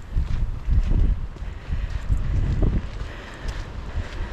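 Wind buffeting the microphone in irregular gusts, a low rumble that rises and falls.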